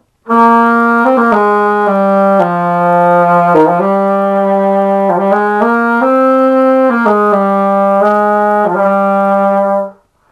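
A 1972 King Cleveland 613 alto saxophone playing a slow phrase of about a dozen held notes in its low register. It starts just after the beginning and breaks off just before the end.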